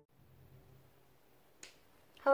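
Near silence: faint room tone, with one short sharp click near the end.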